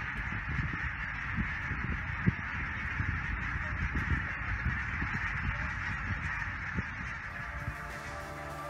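A large flock of geese calling overhead, many honks blending into a steady clamour, over an irregular low rumble.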